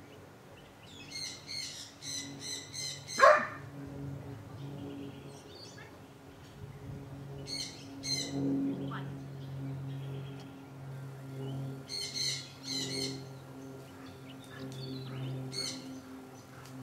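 Birds chirping in short runs of rapid, high notes, several times, with one loud, short call sliding sharply downward about three seconds in. A steady low hum runs underneath.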